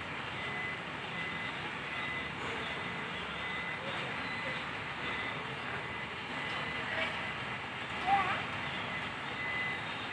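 Bus terminal ambience: a steady rumble of idling and slow-moving bus and car engines. A faint high beep repeats at short intervals throughout, like a vehicle's reversing alarm. A short wavering tone sounds about eight seconds in.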